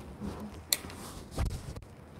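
Quiet handling noises with no speech: one sharp click about two-thirds of a second in, then a dull thump a little later.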